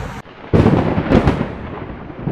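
A loud rumbling, thunder-like sound effect that starts suddenly half a second in, surges again about a second in, then slowly fades.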